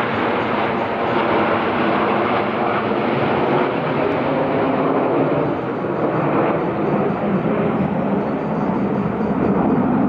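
Jet engines of the Red Arrows' formation of BAE Hawk T1 trainers flying overhead, a steady rushing jet noise with no breaks.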